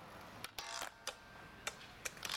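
Faint skateboard sounds on concrete: a few sharp clicks and a short scraping burst about half a second in, over a low hiss.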